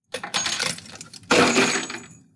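A cup loaded with steel nails drops when the five-strand spaghetti bridge breaks under the 36th nail: nails clatter and rattle, with a louder crash and a short metallic ring about a second and a half in.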